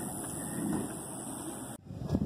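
Steady outdoor background noise on a handheld camera's microphone, with a slight swell about half a second in and a brief dropout near the end.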